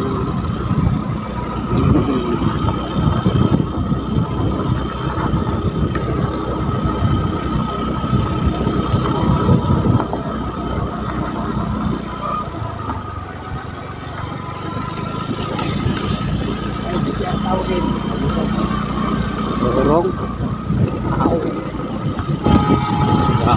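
Motorcycle running along a rough unpaved road, its engine and road rumble mixed with wind on the microphone; the sound eases off briefly in the middle before picking up again.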